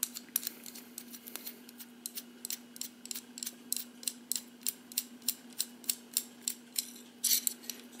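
Small metal clicks, about four a second, from an airsoft hop-up chamber and inner barrel being handled while the threaded collar on the chamber is turned. A faint steady hum lies underneath, and there is a short scrape of noise near the end.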